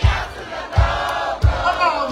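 Live go-go band music: a bass drum keeps a steady beat, three hits about two-thirds of a second apart, under a crowd shouting along.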